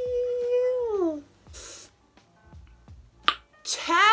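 A woman's voice holding a sung or hummed note for about a second, then sliding down in pitch, followed by a brief breathy hiss. A single sharp click sounds about three seconds in, and a breath and the start of speech come near the end.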